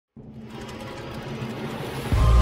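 Logo-intro riser sound effect: a rumbling hiss that starts abruptly just after the start and grows steadily louder, building up to the intro music.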